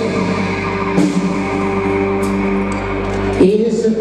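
Live rock music: a male singer with guitar, the band holding a long steady note that breaks off about three and a half seconds in before the next sung line begins.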